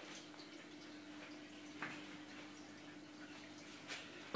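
Faint room tone of a running fish tank: a steady low hum with a soft hiss of water from the aquarium equipment, and one small tick a little under two seconds in.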